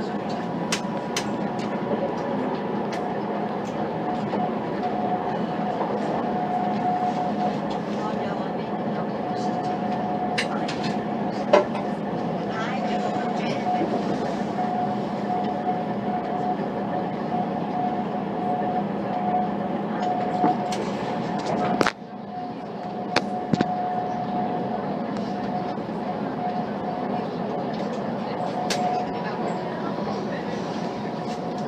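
Inside a Class 185 diesel multiple unit running at speed: a steady rumble from the underfloor diesel engine and running gear, with a held whine and scattered clicks from the track. A sharp knock comes about two-thirds of the way through, and the noise dips briefly after it.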